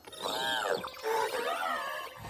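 Cartoon electronic sound effect: a single pitched chirp that swoops up and down, followed by a second of warbling, wobbling tones.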